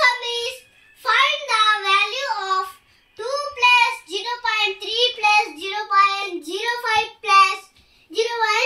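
A young boy's voice speaking in a high, sing-song lilt in short phrases with brief breaks, reading out a decimal sum term by term.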